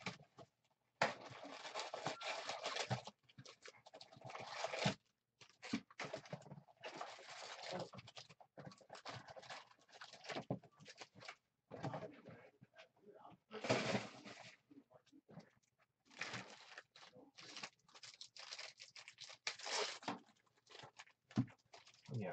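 Plastic shrink wrap crinkling and tearing as it is stripped off a cardboard trading-card box, in irregular bursts with short pauses, along with the cardboard lid being opened and the foil packs inside handled.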